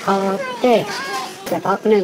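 Speech only: a person asking a short question in conversation.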